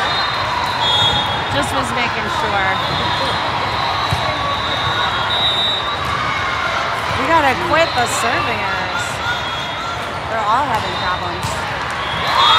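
The echoing din of a large hall full of indoor volleyball: many voices of players and spectators calling and chattering, with the sharp smacks and thuds of volleyballs being hit and bouncing on the courts. The calls grow louder about seven seconds in and again near the end.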